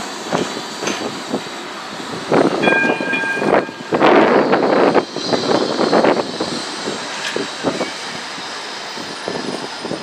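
Blackpool Flexity 2 tram running past at close range, with its electric running noise and wheels on the rails. A short steady warning horn sounds about two and a half seconds in, and a louder rush of noise follows a second later.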